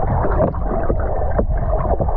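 Freestyle swimmer's strokes and kicks heard underwater: a steady muffled rush of churning water and bubbles, with a few sharp pops.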